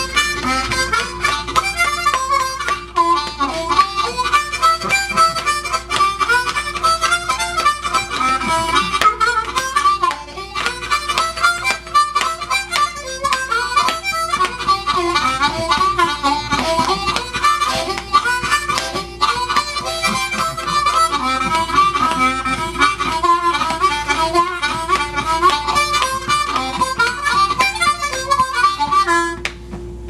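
Blues harmonica in C played solo, a quick jump-style line of rapid notes over a steady held tone, played with the harp cupped in the hands. The playing fades just before the end.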